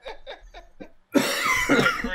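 A sudden loud vocal outburst from a player into a headset microphone, about a second in, lasting nearly a second, after softer voice sounds.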